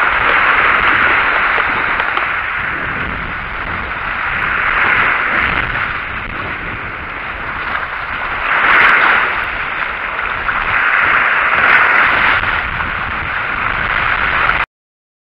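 Sea waves breaking and washing over rocks at the shoreline close by: a steady rush of surf that swells and ebbs several times, loudest about nine seconds in.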